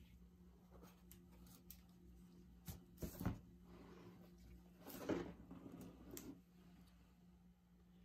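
Quiet room tone with a steady low hum, and a few faint soft rustles and taps from gloved hands tilting and shifting a painted canvas.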